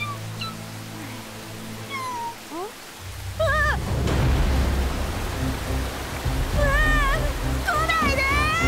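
Background music with an animated baby bird crying in high, arching chirps: a short cluster about three seconds in and two longer cries near the end. A low rumble comes in about three seconds in.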